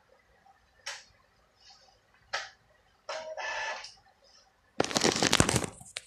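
Rubbing and knocking on a phone's microphone as the phone is picked up and handled, the loudest sound, lasting about a second near the end. Before it come a few sharp clicks and a short pitched call under a second long.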